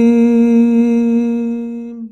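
A single voice holding one long chanted note, steady in pitch and slowly fading away, at the close of a melodic recitation.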